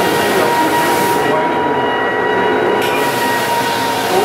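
Floor drum sander running steadily while sanding an old solid-wood parquet floor: a loud, even motor-and-abrasive drone with a constant high whine. The top-end hiss drops away for about a second and a half in the middle.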